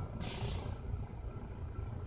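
Quiet, steady low rumble of car-cabin background noise, with a brief faint hiss near the start.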